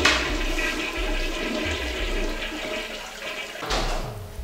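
Toilet flushing, a rush of water that is loudest at the start and tapers off over about three and a half seconds, with a brief swell of noise near the end.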